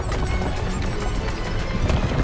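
Cartoon background music over a quick clatter of many small hooves running off in a stampede.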